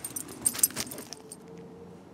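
A dog's metal collar tags jingling as it trots: a quick run of bright clinks that dies away a little over a second in.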